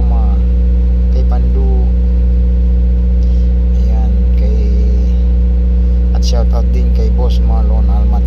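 A steady low mechanical hum under intermittent talking, with a few sharp clicks near the end.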